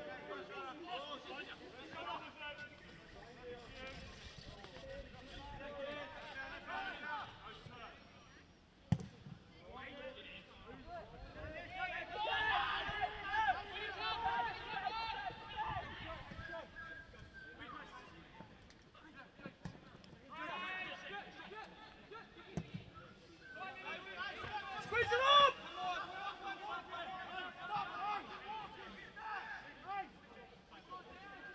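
Men's voices calling and shouting during a football match, in short bursts on and off, loudest near the middle and again a little past two-thirds of the way through. A single sharp thud comes about nine seconds in.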